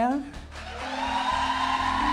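Studio audience applauding and cheering, swelling up about half a second in and then holding steady.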